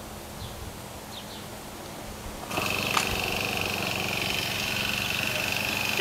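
Small Honda four-stroke engine of a pole pruner running steadily, faint at first, then suddenly much louder about two and a half seconds in, with a steady high whine over its hum.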